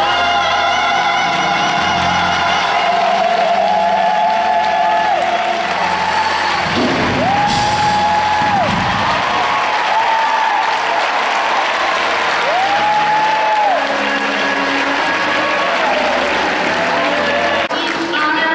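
Gospel choir singing with a live band of piano, organ and drums, holding long notes that slide up and down with vibrato over a moving bass line.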